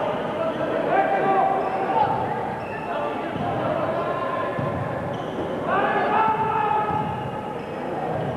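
Basketball bouncing on an indoor court during play, with crowd voices in a large hall and long held calls about a second in and again near six seconds.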